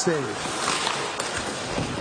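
Ice hockey arena sound on a TV broadcast: a steady haze of crowd murmur and skates working on the ice during live play. A commentator's word ends at the start.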